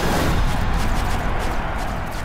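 Title-card sound effect: the loud, noisy, rumbling tail of a boom-like hit, slowly fading.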